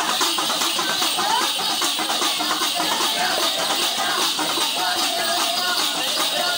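Festival procession music: many voices singing and calling together over continuous rhythmic percussion with a steady metallic jingling.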